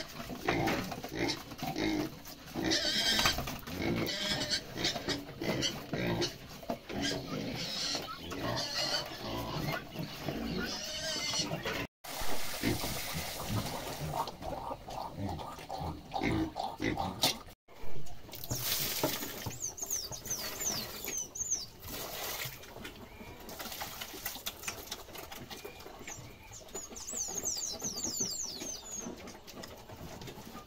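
Pigs eating feed at a trough, chewing and munching in a run of quick, irregular crunches.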